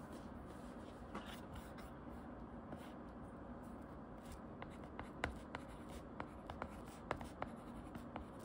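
Hard plastic nib of an Apple Pencil-style stylus writing on a tablet's glass screen. Soft, faint scratching strokes give way in the second half to a run of sharp clicks as the tip taps down on the glass.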